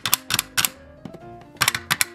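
Quick runs of sharp plastic clicks as a toy figure is knocked against a plastic toy vending machine: a burst of about five at the start and another of about four near the end, over quiet background music.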